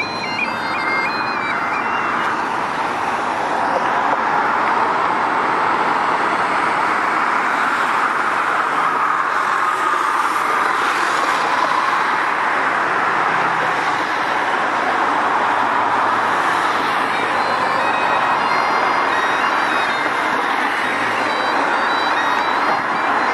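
Steady road traffic noise from buses and cars crossing the bridge. A high piping tune dies away in the first couple of seconds.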